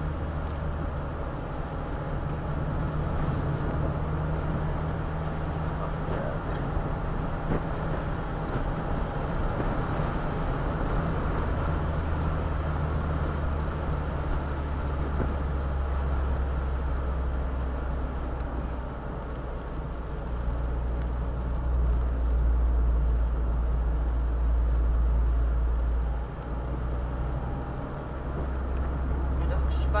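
An open-top roadster driving on a road: a steady low engine drone under tyre and wind noise. The engine note deepens and gets louder in the second half.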